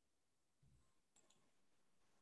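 Near silence: faint room tone, with a soft low thump and a couple of faint clicks.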